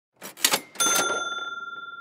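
Intro sound effect: a quick clatter of a few clicks, then a single bright bell ding just under a second in that rings on and slowly fades.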